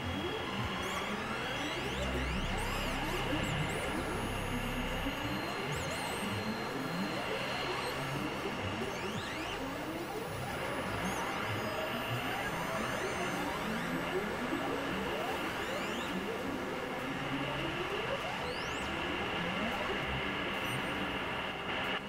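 Experimental electronic synthesizer noise drone: a dense, steady wash crowded with tones sliding up and down, over a held high tone and a low rumble that is strongest in the first few seconds.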